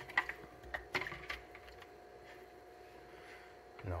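A few light clicks and knocks in the first second and a half as a spoon dunks a block of ice in a plastic drink jug, then a quiet stretch with a faint steady hum.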